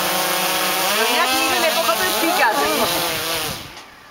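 Quadcopter drone's propellers whirring close by with a hiss of prop wash. Their pitch wavers up and down as it hovers low over a raised hand and is caught, and the motors stop near the end.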